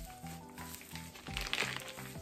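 Background music with a steady beat, and clear plastic wrapping on a handbag crinkling briefly about one and a half seconds in as the bag is handled.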